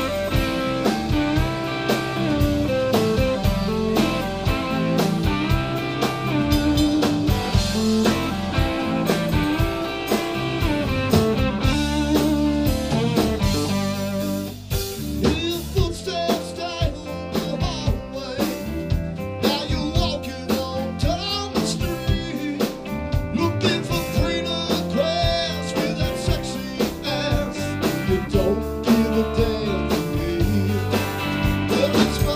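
Live blues-rock band playing: electric guitars, bass, drum kit and hand percussion, loud and steady.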